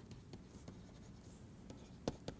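Faint taps and light scratches of a stylus writing on a pen tablet, with a few short clicks as the pen touches down.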